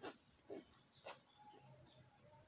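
Faint scratching of a ballpoint pen on paper: three short strokes about half a second apart as lines and numbers are written. Faint thin tones come in during the second second.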